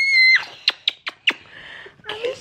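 A young girl's high-pitched squeal of laughter, held and cut off sharply about a third of a second in, followed by four quick, breathy gasps of laughter.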